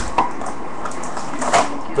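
Stacks of USA Baseball card packs being set down on a tabletop: a sharp knock at the start, another just after it, and one more near the end.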